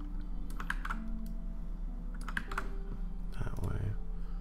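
A few separate keystrokes and clicks on a computer keyboard as rotation values are typed in, over a steady low hum.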